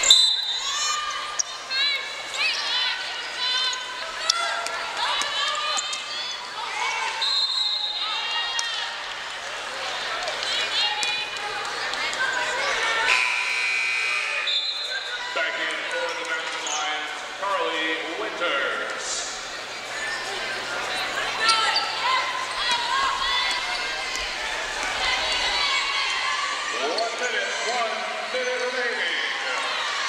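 Basketball game action on a hardwood gym court: the ball being dribbled, with players' voices and brief squeaks in the large hall.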